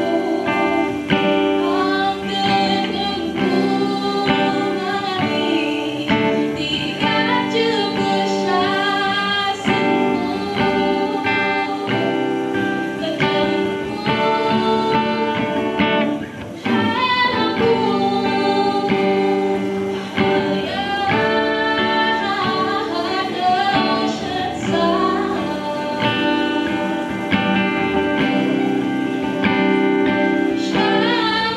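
A woman singing a song while strumming an acoustic guitar, performed live through a microphone and PA. The song pauses briefly about halfway through, between phrases.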